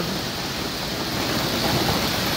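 Steady heavy rain falling, an even hiss of rain on wet ground and water.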